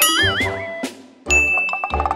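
A bright cartoon 'ding' sound effect starts suddenly a little past halfway and rings steadily. It plays over cheerful children's background music with a regular beat.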